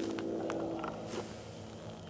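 A few light clicks and knocks from a wooden ramp carrier being handled and lowered toward the garden-railway track, over a steady low hum.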